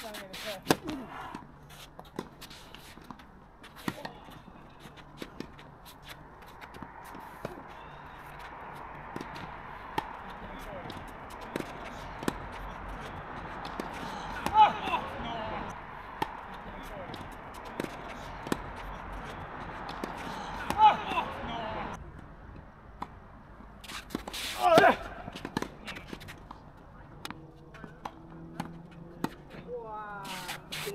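Tennis ball struck with rackets: sharp pops of a serve about a second in and of the rally that follows, with short shouts from players now and then and a steady hiss through the middle stretch.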